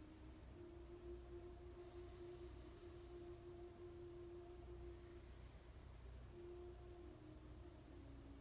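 Near silence: faint room tone under quiet background music of slow, long-held notes that step up and then back down in pitch.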